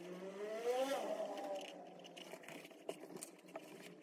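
A faint motor vehicle engine rising in pitch as it speeds up over about a second, then evening out and fading away.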